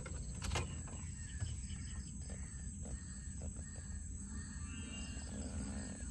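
Faint outdoor evening ambience heard from inside a car: a steady high-pitched insect drone over a low rumble, with a couple of soft clicks near the start.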